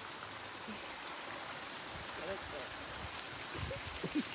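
Steady rush of running water, with faint voices in the background.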